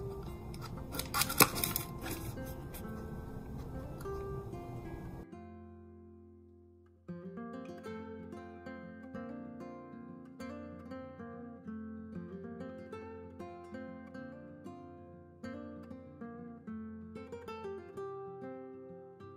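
Acoustic guitar background music of plucked notes. For the first five seconds it sits under a hiss with a few sharp clicks, then it drops away briefly and starts again about seven seconds in.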